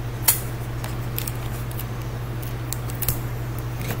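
Clear adhesive tape handled and torn from a roll: a few short crackles, the sharpest about a third of a second in, over a steady low hum.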